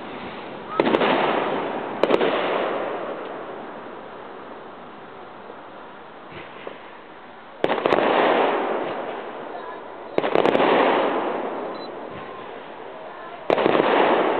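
Aerial fireworks shells bursting: five sudden booms, two about a second apart, then three more several seconds apart, the last near the end. Each boom is followed by a rumbling echo that fades over a second or two.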